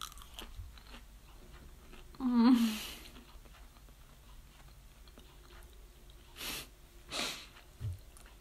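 A person quietly chewing a mouthful of crumb-coated jackfruit burger. About two seconds in there is a short hum that falls in pitch, and near the end two short breathy sounds.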